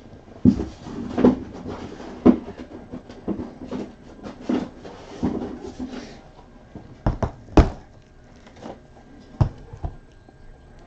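Cardboard trading-card boxes handled on a table: about a dozen irregular knocks, taps and thuds, the loudest a quick cluster about seven seconds in.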